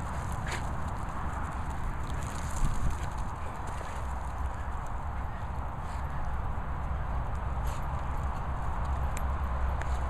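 Dogs running on grass, with footsteps on the turf: a scatter of soft thuds and short clicks over a steady low rumble on the microphone, and one louder bump about two and a half seconds in.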